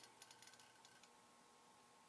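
Near silence: room tone, with a few faint clicks in the first second, as of a small object being handled.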